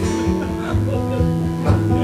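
Steel-string acoustic guitar played softly, sustained notes ringing, with a strum near the end.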